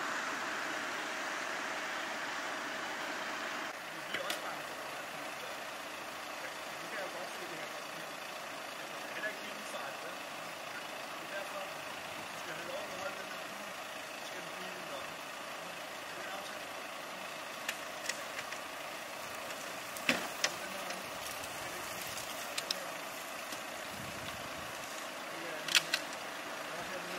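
Steady hum of idling police vehicles with indistinct voices in the background. A few sharp clicks and knocks, the loudest near the end, come from equipment being handled in a drawer in the car's boot.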